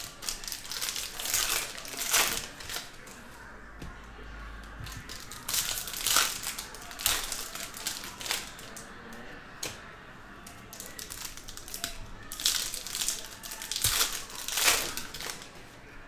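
Foil trading-card pack wrappers crinkling and tearing as packs are opened by hand, with cards being handled. Irregular rustling with several louder crackles.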